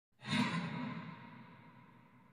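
Whoosh sound effect for an animated logo reveal: it swells in just after the start, then fades away over about a second and a half.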